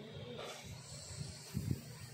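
Quiet pause in room tone, with a brief faint murmured voice about half a second in and a soft low thump shortly before the end.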